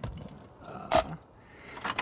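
Handling noise from loose car-stereo wires and small plastic splice connectors: a few clicks and light scraping, the sharpest click about a second in.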